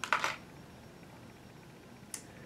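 Quiet room tone: a steady low hiss, with one brief soft noise right at the start.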